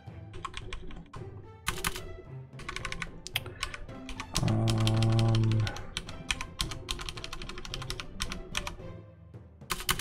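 Computer keyboard typing in quick bursts of keystrokes, with short pauses between bursts, as code is written. About four and a half seconds in, a loud low steady tone sounds for just over a second.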